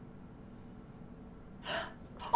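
Low steady room hum, then about a second and a half in a woman's short, sharp gasp of surprise.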